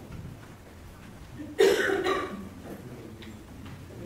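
A single loud cough about one and a half seconds in, sudden and short, against low room noise.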